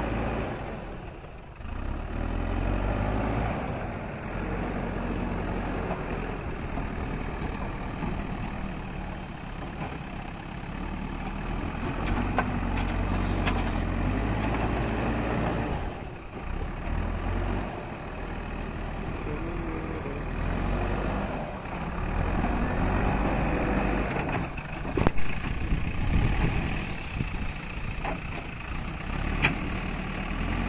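JCB backhoe loader's diesel engine working, its pitch and loudness shifting with load as the front bucket pushes and levels soil. A few sharp knocks come through, the loudest near the end.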